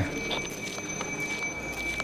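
Light footsteps on a cave pathway, over a steady high-pitched whine that starts at the cut.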